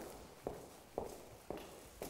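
A man's footsteps on the concrete floor of an underground car park: faint, even steps at about two a second.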